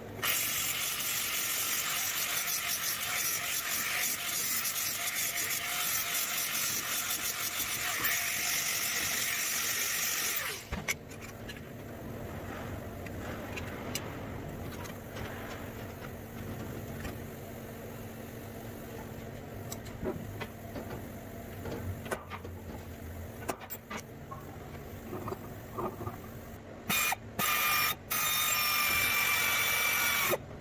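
A small handheld die grinder works stainless steel for about ten seconds, then cuts off suddenly. Scattered light clicks and knocks of tools being handled follow. Near the end an electric drill starts boring into a stainless steel disc held in a vise, stopping briefly twice.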